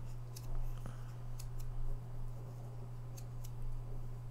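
A few scattered keystrokes on a computer keyboard, single sharp clicks spaced irregularly, over a steady low hum.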